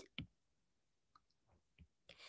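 Near silence broken by a few faint, brief clicks, the first just after the start.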